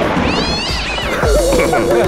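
A short, high cat-meow sound effect rises and falls, then a wavering, warbling tone comes in about halfway through, over background music.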